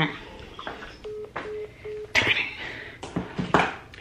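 Three short, evenly spaced beeps from a mobile phone, the tones heard when a call ends, with brief bits of voice around them.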